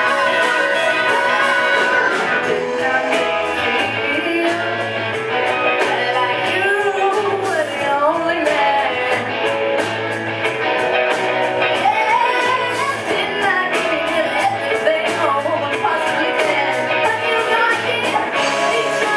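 A live rock band playing: electric guitars, a bass line that changes note about once a second, and a drum kit keeping a steady beat, with singing over them.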